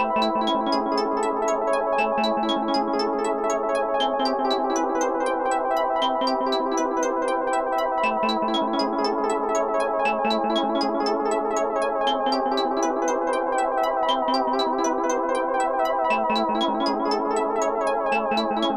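Moog Grandmother synthesizer playing a fast, repeating run of short notes through an Eventide Rose delay, with sine-LFO modulation on the repeats while the depth knob is turned. The note pattern shifts every couple of seconds.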